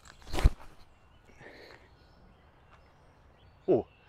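Forehand throw of an Innova Gator disc golf approach disc: one short, sharp whoosh-and-thump of the throwing motion about half a second in, then faint outdoor background.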